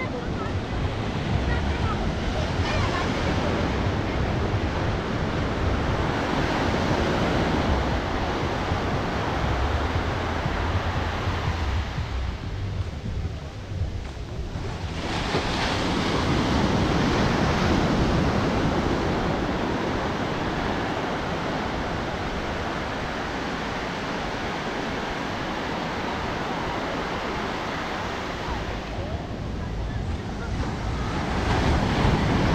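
Sea surf: small waves breaking and washing up the sand, with wind rumbling on the microphone. The wash eases a little past the middle, then a wave breaks and swells louder about fifteen seconds in.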